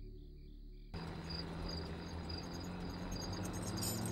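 Crickets chirping in a night ambience: short high chirps repeating a few times a second over a low steady hum. About a second in, the soundtrack cuts from a quiet drone with evenly pulsing tones to this fuller insect ambience.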